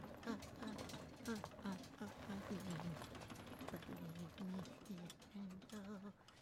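A man's low voice humming a tune in short, separate notes, about two or three a second, with faint clicks underneath.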